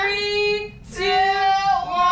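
A woman in the pushing stage of labour crying out in two long, high-pitched held notes with a short break between, the second falling away at its end.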